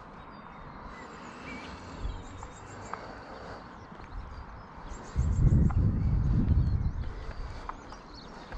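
Outdoor ambience while walking: soft scattered footsteps, faint birdsong trilling in the background, and, about five seconds in, a two-second low rumble of wind buffeting the microphone that is the loudest thing heard.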